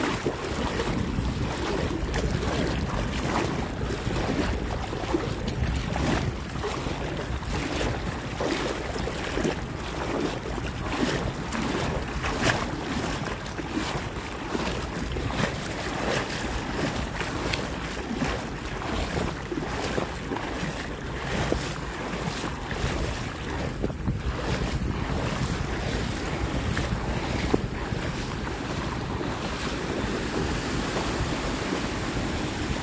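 Wind buffeting the microphone over the wash of a calm sea, a steady rumbling noise broken by frequent small crackles.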